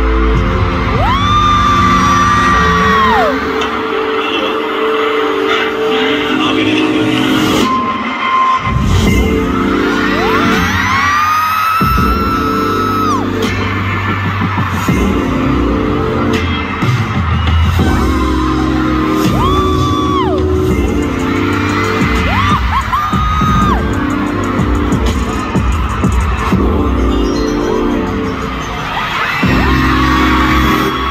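Live K-pop concert music played loud through an arena sound system: an instrumental section with heavy bass hits and long, high held notes that slide in and slide off, recurring several times.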